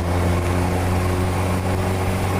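Motorcycle engine running at a steady speed while cruising, a constant low hum that neither rises nor falls, with road and wind noise around it.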